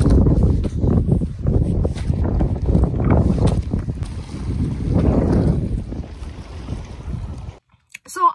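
Wind buffeting the phone's microphone in strong gusts, a dense low rumble that swells and eases. It cuts off suddenly near the end.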